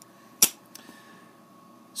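A single sharp click about half a second in: the paintball marker's removed side cover being set down on a glass counter.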